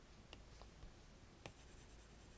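Faint taps of an Apple Pencil's plastic tip on the iPad's glass screen: three light clicks, the last about a second and a half in the clearest, over near silence.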